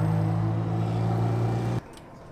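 A motor vehicle's engine running close by as a steady low hum, which stops abruptly near the end.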